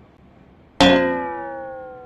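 A single ringing musical sound effect hits sharply about a second in and dies away slowly, its several tones sliding gradually lower in pitch.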